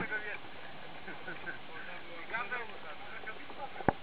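Voices talking over the steady noise of a motorboat under way, with one sharp knock near the end.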